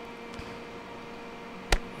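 Low steady electrical hum with a few faint steady tones and light hiss, broken by a single short click near the end.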